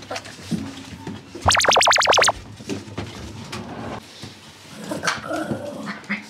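A toy poodle puppy gives one short, high-pitched, wavering squeal about a second and a half in, over background music.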